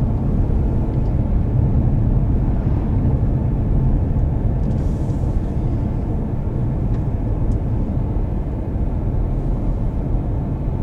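Steady low rumble of road and engine noise inside a moving car.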